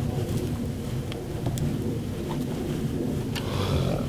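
A low, steady rumble, with a few faint clicks.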